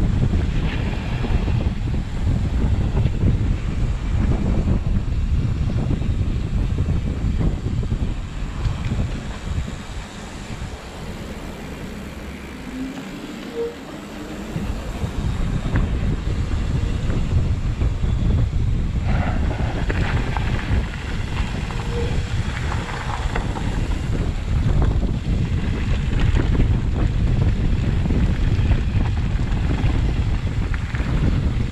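Wind buffeting the microphone of a bike-mounted or helmet camera on a moving mountain bike, with the rumble of the ride underneath; it eases off for a few seconds in the middle, then returns.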